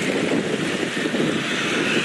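Street traffic noise: motorbikes and scooters running past on a city road, a steady wash of sound.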